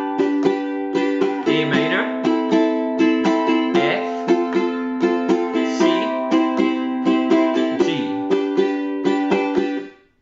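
Ukulele strummed in a down, down, up, up, down, up pattern through the A minor, F, C and G chord progression. The strumming stops just before the end.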